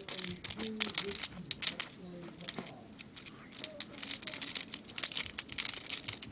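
Crinkling and rustling of a small plastic toy's long synthetic hair as it is handled and brushed, heard as many quick, irregular crackles and clicks.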